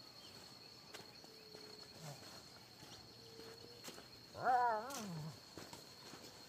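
A hunting dog baying once, a drawn-out call that rises then falls, about four and a half seconds in. It is baying at an animal it has found in the brush.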